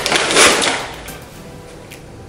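A paper popcorn bag being torn open: a loud crackling rip of paper in the first second, fading to a quieter rustle.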